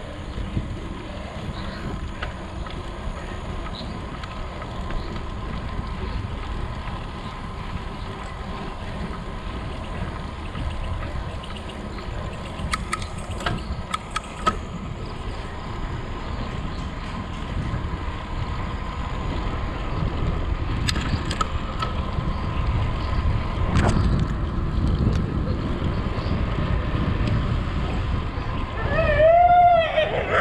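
Steady wind rumble on the microphone and road noise from a bicycle riding along a paved road, with a few sharp clicks. Near the end a dog barks.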